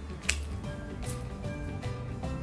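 Background music with steady bass notes, over which hand pruning shears make one sharp snip through a tangerine branch about a third of a second in, then a fainter click about a second in.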